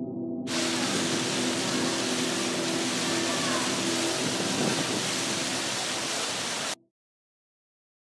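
A loud, steady rushing hiss like static that starts abruptly about half a second in and cuts off suddenly near the end. A low steady tone carries on under it for the first few seconds.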